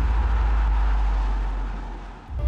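Transition sound effect for an animated countdown graphic: a deep, steady bass rumble with a rushing noise over it, fading near the end.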